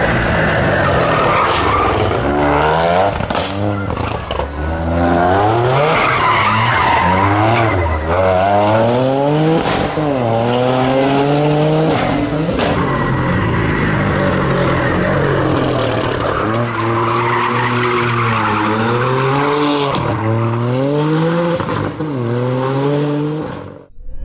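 Toyota GR Yaris rally car's turbocharged three-cylinder engine revving hard and falling back again and again through gear changes, with tyres squealing on tarmac as the car is driven sideways through corners. The sound cuts off abruptly near the end.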